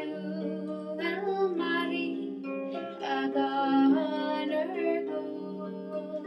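A harp played with plucked, ringing notes and chords. A woman's singing voice comes in over it about a second in and fades out before the end.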